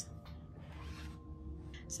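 Brief faint rustle of a small cardboard blind box being handled, from about half a second in to just past one second, over soft background music.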